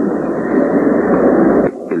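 Loud, steady background noise on an old interview recording, a dull rushing hiss without clear voices, which cuts off abruptly near the end.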